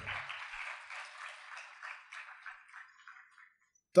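Faint applause of many hands that dies away over about three seconds.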